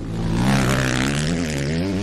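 An engine running with its pitch wavering up and down, with a hiss over it that swells about half a second in.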